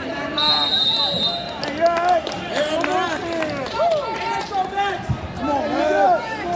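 A high, steady electronic tone sounds for about a second shortly after the start, from the scoreboard timer as the bout's clock runs out. It is followed by spectators and coaches shouting and cheering over one another.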